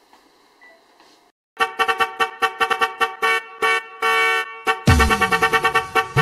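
A horn-like tone of steady pitch, chopped into rapid stuttering blasts, begins after a faint first second and a half. About five seconds in, dance music with heavy bass and a falling bass sweep starts.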